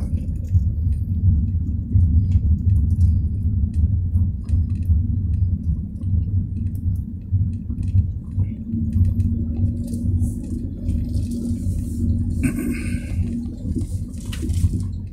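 Low, steady rumble of a car's engine and road noise heard from inside the cabin while driving slowly, with light clicks and rattles throughout. In the second half a steady hum joins for about five seconds.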